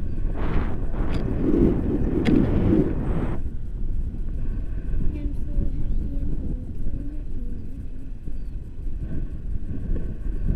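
Wind buffeting the microphone of a camera on a paraglider in flight, a steady low rumble. It is louder and more gusty for the first three seconds or so, then settles.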